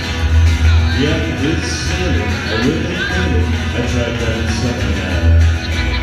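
Live country-rockabilly trio playing an instrumental passage: upright double bass plucking steady low notes under strummed acoustic guitar, with an electric guitar playing bending lead lines over the top.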